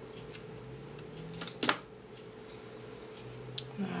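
Small scissors snipping into an adhesive strip along the edge of a glass square: two sharp snips close together about a second and a half in, a fainter click early on and another near the end.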